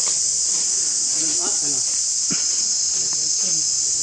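A steady, high-pitched drone of insects that never lets up, with faint voices talking in the background and a couple of light clicks.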